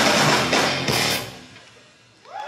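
Live rock band with electric guitars and a drum kit playing the final bars of a song, ending about a second in with last loud hits, then the sound dies away.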